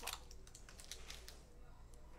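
A few faint, light clicks and scratches of a craft knife blade cutting and lifting a small piece out of adhesive vinyl, mostly in the first second.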